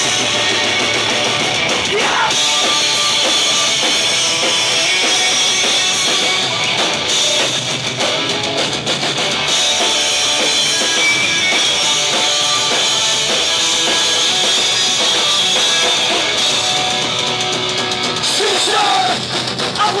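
Punk rock band playing loud and live: distorted electric guitars, bass and drums with cymbals, in an instrumental stretch, with the shouted vocals coming in at the very end.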